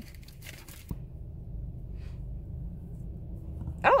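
Handling noise as a cloth face mask is put on: rustling and crinkling for about the first second, a click about a second in, then a muffled low rumble.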